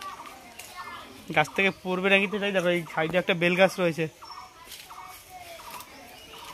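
A person's voice, loud and drawn-out, from about a second and a half in until about four seconds in. Faint short chirps follow.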